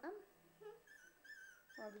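Puppy whimpering: a few faint, thin, high-pitched whines that waver in pitch, held for about a second in the middle.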